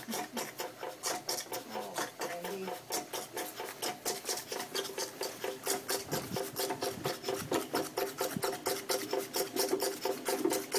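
Belt-driven vacuum pump running, its piston ticking fast and evenly at about six strokes a second over a steady hum.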